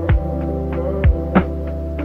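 Background music: sustained low synth chords with three deep drum hits.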